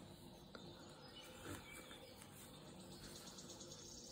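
Near silence: faint room tone with a few soft rustles of jute twine being worked with a crochet hook, one slightly louder about one and a half seconds in.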